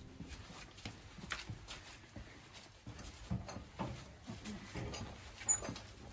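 A series of irregular soft knocks and clicks in a small room, with one brief sharper click near the end.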